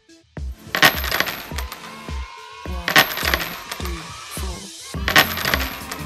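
Background music with a steady beat, cut by three bright ringing hit sound effects about two seconds apart. They are transition effects marking each new line of text.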